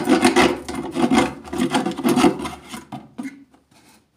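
A hand-held saw blade cutting through the side of a plastic engine-oil jug, with rasping back-and-forth strokes about two to three a second that stop a little after three seconds in.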